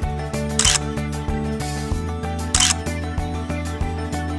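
Background music with sustained notes, with two short camera-shutter clicks about two seconds apart.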